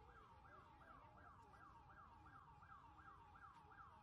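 Faint siren in a fast yelp pattern, its pitch falling in each of about three sweeps a second, over a low rumbling background.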